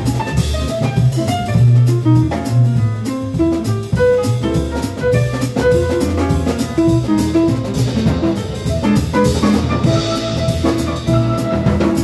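Live jazz trio playing an instrumental passage in a bossa nova groove, with no vocal. An upright bass line and a drum kit with busy cymbal strokes sit under a quick melodic line of short notes.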